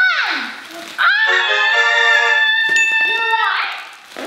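A child's shout, then a short edited-in musical jingle: a run of quick stepping notes under one long held high note, lasting about two and a half seconds before fading.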